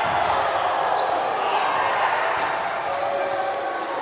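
Gymnasium crowd noise: many voices shouting and talking over one another in a large echoing hall as the players celebrate, easing slightly in level.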